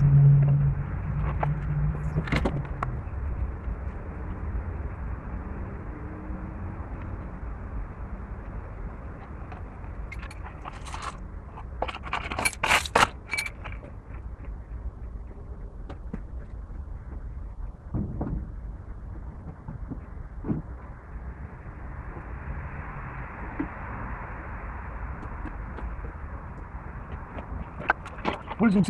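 Intermittent clicks, knocks and scrapes from work with a hydraulic bottle jack under a car, clustered most densely about ten to thirteen seconds in, over a steady low rumble.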